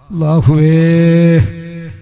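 A man's chanting voice holding one long, steady syllable for about a second and a half during a Malayalam dua, then dropping to a softer tail near the end.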